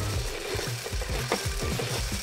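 Motorized LEGO top starter whirring steadily, its motor and gear train spinning the top up to high speed, over background music.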